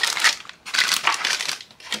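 Plastic zip-lock bags of small kit parts crinkling as hands rummage through them, in two bursts.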